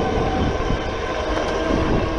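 Super73 R electric bike riding along a concrete path: a steady motor whine over wind rushing on the microphone and tyre noise.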